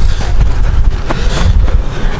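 Loud low rumble of wind buffeting the microphone, with a couple of short knocks in the second half.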